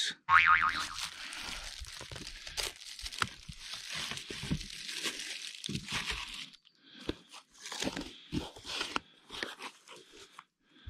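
Taped cardboard packaging and plastic wrap being torn and pulled apart by hand, with dense crinkling and crackling for the first six seconds or so. It opens with a brief twang. After that come scattered, quieter crunches and rustles as the cardboard is handled.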